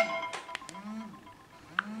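A Samsung smartphone's chiming ring melody cuts off right at the start, its last notes dying away. A faint low pulse repeats about once a second, and a short single beep sounds near the end.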